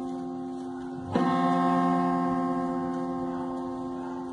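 Upright piano test note struck and left to ring, fading slowly, then struck again about a second in and ringing on while the tuning pin is set. The piano is being pulled up in a pitch raise from almost a whole tone flat.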